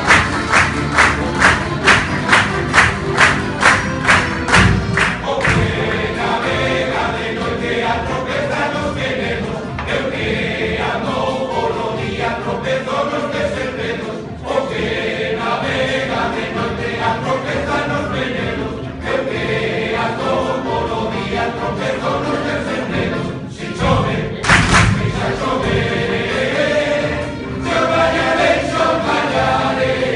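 Male folk choir singing in chorus with strummed guitars, bandurria and accordion. The first few seconds carry a clapped beat of about two and a half strokes a second, and a brief loud burst of noise comes about 25 seconds in.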